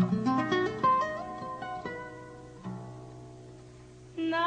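Seven-string nylon-string classical guitar played solo: a quick rising run of plucked notes in the first second, then a few single notes and a low bass note about two-thirds through, left to ring and fade away.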